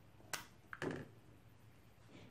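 A sharp single click about a third of a second in, followed by a softer click just before one second: a Mercedes W123 glow plug relay/timer pulling in as its key wire is switched to positive, sending battery voltage to the glow plug outputs.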